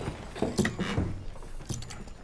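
Light metallic jingling and clinking with a few soft knocks, in a cluster about half a second in and again near the end.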